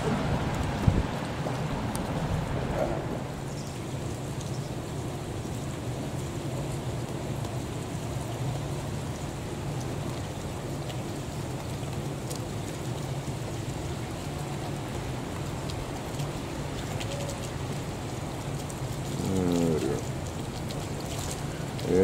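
Steady rain falling on the pavement and canopy, with a steady low hum beneath it. A knock sounds just under a second in, and near the end a short, rising, pitched whine rises above the rain.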